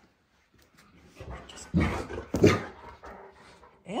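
Great Dane barking twice, about half a second apart.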